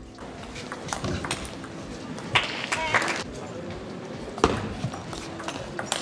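Table tennis rally: the celluloid ball is struck by rackets and bounces on the table in sharp clicks about once a second. There is a brief squeak around the middle and faint voices in the hall behind.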